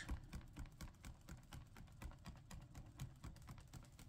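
A folding hand fan waved rapidly, its ribs making a faint, rapid, irregular run of clicks and rustles.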